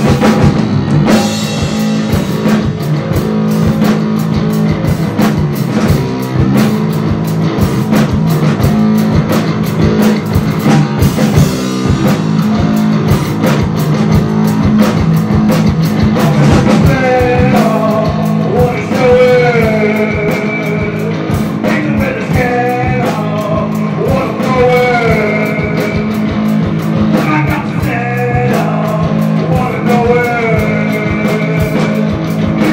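Live rock band playing: drum kit keeping a steady beat under electric guitar. About halfway through, a wavering melody line with bending pitch comes in over the top.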